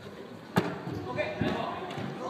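A futsal ball kicked hard: a sharp thud about half a second in, then a second thud about a second later.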